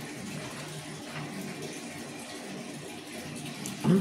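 A man drinking from a plastic cup in a pause, with a few faint sips or swallows, over a steady background hiss of room noise.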